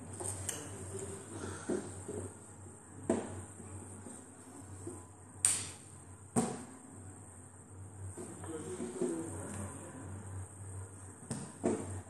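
A handful of sharp, irregular knocks and taps on a glass tabletop, over a faint steady hum.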